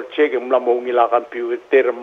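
Speech only: a woman talking steadily in Palauan.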